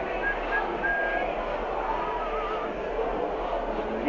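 Steady background noise of a town-centre street at night, with a faint high tune over it: a few short held notes in the first second and a brief warble a little past halfway.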